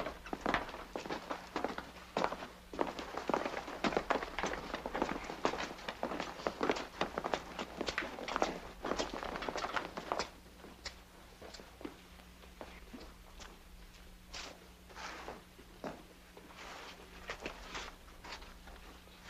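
Footsteps: many irregular steps, dense for the first ten seconds or so and sparser after, over a faint steady hum.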